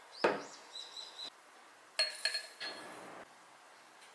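Ice cubes clinking in a glass of iced latte as the glass is handled, in two bursts about two seconds apart, each with a short ringing note.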